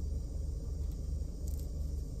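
Steady low rumble inside a car cabin, the sound of the car's engine idling.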